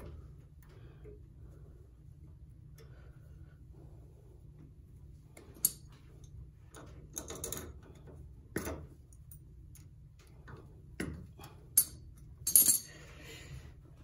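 Scattered sharp metal clicks and clinks, a handful spread over several seconds, as a small hand tool works a reused cotter pin into the outer tie rod end's crown nut and bends it over.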